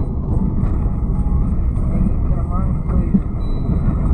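Steady low rumble of a moving road vehicle heard from on board, with faint voices underneath.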